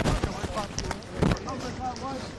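Faint men's voices talking, broken by two short muffled thumps about a second and a quarter apart.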